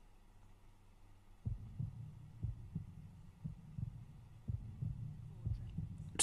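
Deep, low thumps at uneven intervals, about two a second, over a low rumble. They start about a second and a half in, after a faint hum.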